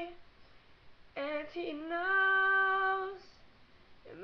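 A woman singing unaccompanied: after a pause of about a second, one sung phrase ending on a long held note, then a short pause.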